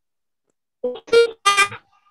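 Three short piano-like notes in quick succession, starting just under a second in.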